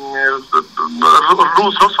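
Only speech: a man talking, opening with a drawn-out hesitation sound before the words resume.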